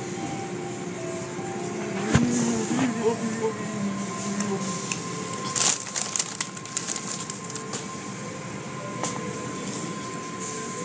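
Automatic car wash heard from inside the car: water spraying and cloth wash strips slapping and rubbing over the body, with a sharp knock about two seconds in and a steady high machine tone.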